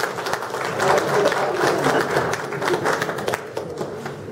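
Applause from a small standing audience, many hands clapping at once, thinning out near the end.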